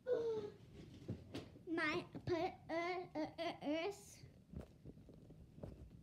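A young girl's high-pitched voice babbling without clear words, in a quick run of short sounds that rise and fall between about two and four seconds in.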